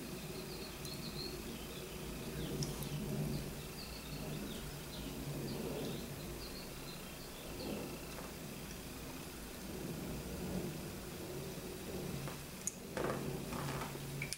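Faint steady background noise: a low hum with scattered small high chirps.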